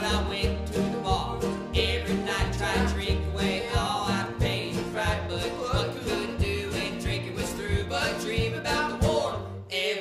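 Live acoustic band playing a country-folk song: strummed acoustic guitars, banjo and plucked upright bass, with a steady beat.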